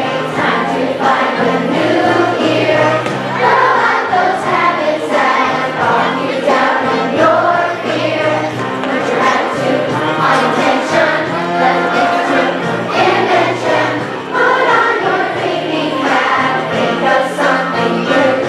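A song with a backing track and a large group of voices singing together, the voices of a crowd of schoolchildren singing along.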